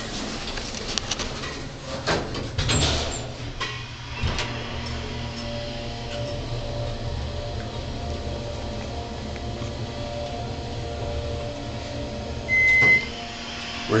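Otis passenger elevator: the door slides shut with a few knocks, then the car travels up with a steady motor hum and faint whine, and a single short high beep sounds near the end as it arrives at the floor.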